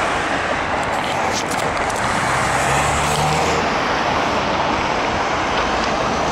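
Steady road and traffic noise from a car driving through city streets. An engine note rises briefly about two to three seconds in.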